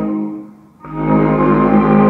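Contra-alto clarinet playing a low hymn melody over an orchestral backing track. The music fades into a short pause just under a second in, then the next phrase begins.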